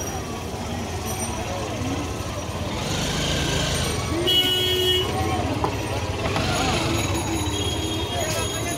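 Busy street ambience: many voices chattering over a steady traffic rumble, with a short vehicle horn toot about four seconds in.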